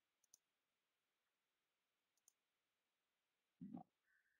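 Near silence with two faint single clicks from a computer mouse while a presentation file is opened, and a brief soft sound near the end.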